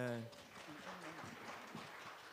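A held vocal note ends right at the start. Then comes the faint rustling, shuffling and murmur of a standing congregation, with scattered light knocks.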